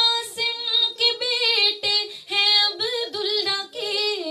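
A woman singing a naat, an Islamic devotional song, solo into a microphone with no instruments. Her notes are held and then slide and waver in ornamented glides, with short breaks between phrases.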